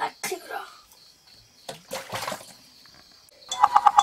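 Water splashing briefly about two seconds in as a bowl is dipped into a water container to scoop a drink. Music begins near the end.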